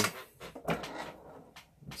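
Handling noise at a benchtop drill press: a short scrape followed by a few light knocks as the wooden board and the drill press are shifted into position.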